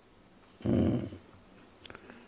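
An elderly man's short, unpitched throat noise lasting about half a second, a little after the start, during a pause in his talk, followed by a faint click near the end.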